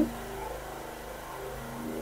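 A steady mechanical hum, like a motor or engine running without change, holding a few constant tones.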